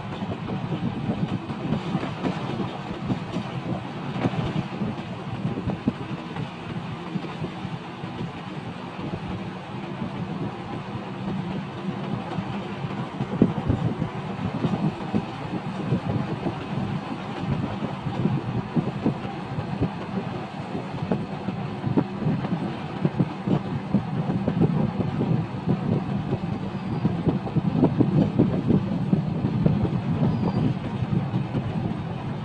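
A vehicle driving along a concrete road: a steady low rumble with a dense, rapid rattle throughout.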